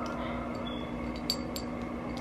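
A couple of light glass clinks from a small glass dropper bottle being handled, each with a short high ring, over a steady low hum.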